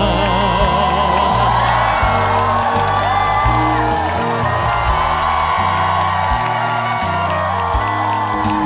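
Band accompaniment of a Korean trot ballad playing between sung lines: a bass line steps from note to note under a melody with vibrato.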